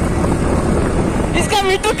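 Motor scooter engine running under way, with a steady rush of wind and road noise; a man starts talking near the end.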